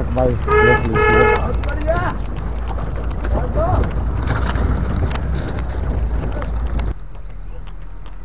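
Two short honks of a vehicle horn, a little over half a second apart, near the start, over a low steady rumble.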